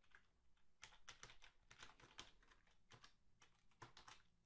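Faint computer keyboard typing: a quick, uneven run of keystrokes as a word is typed.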